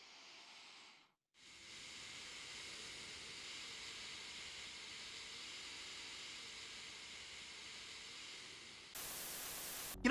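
A long, steady exhale through the nose, a faint hiss held for about seven and a half seconds, from the record-length nasal exhale being acted out. Near the end it gives way to a brief, louder burst of noise.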